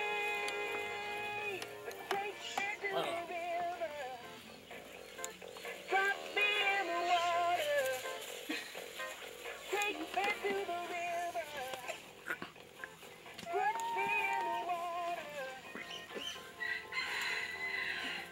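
An animatronic singing bass toy on a plaque singing a song with a musical backing.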